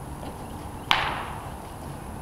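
A horse's hoof knocks against a white ground pole once, about a second in, as it trots over a line of trot poles, a sharp clack with a ringing tail.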